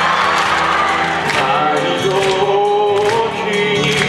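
Live stage-musical music: a singing voice holding long notes over a sustained band accompaniment.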